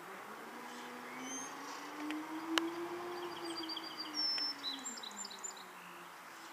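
Cummins diesel engine of a Freightliner M2 garbage truck pulling away, its note rising for about three seconds and then falling away as the truck moves off. Birds chirp faintly in the second half, and there is a single sharp click about halfway through.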